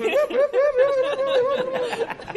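A person laughing: one high-pitched voice in a quick, even run of short chuckles, about five a second, lasting almost two seconds.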